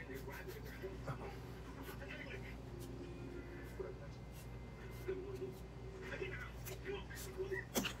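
Quiet room with a steady low hum and faint background voices, broken by a few sharp clicks, the loudest near the end.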